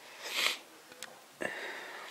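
A person sniffing once, a short hissy intake through the nose about half a second in. A faint click follows, then a short knock with a fading hiss after it.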